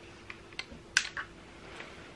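A few small clicks and taps, the loudest about a second in, like things being handled, over a faint steady hum.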